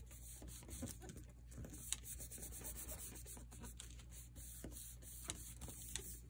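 Faint rubbing and rustling of hands pressing and smoothing a freshly glued paper cover flat onto a paper envelope, with small scattered clicks and a sharper tick about two seconds in.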